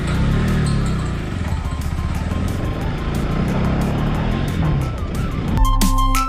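Bajaj Pulsar NS200 single-cylinder engine pulling under way with wind rush on the microphone, its pitch rising twice as it accelerates. Background music cuts in abruptly near the end.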